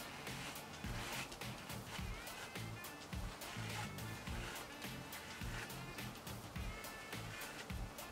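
Quiet background music with a steady beat.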